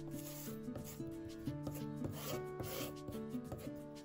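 A wooden spatula rubbing back and forth across the rough flesh side of natural leather, spreading a clear finishing agent, in a series of scraping strokes. Background music plays throughout.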